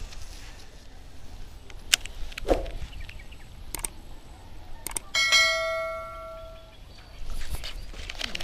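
A subscribe-button sound effect: a click, then a single bell-like notification ding about five seconds in that rings and fades over about a second and a half. A few sharp clicks come before it.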